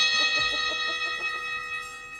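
A small brass hand cymbal ringing on after a single strike, its long ring slowly fading away.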